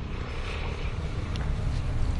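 A low, steady rumble of background noise, strongest in the deep bass, with no speech over it.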